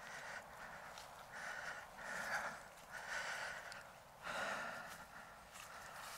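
A man's breathing close to the microphone: soft rushes of breath, roughly one a second, while he walks.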